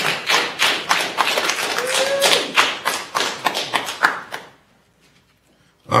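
A small group of people clapping: a dense, irregular run of hand claps that stops abruptly about four and a half seconds in, leaving near silence.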